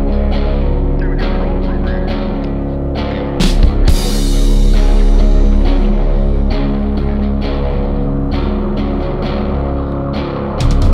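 Instrumental psychedelic stoner rock from a band of two electric guitars, bass and drums. Fuzzed guitars and bass hold sustained chords over a steady beat of about two drum hits a second. A louder burst of drums and cymbals comes about three and a half seconds in.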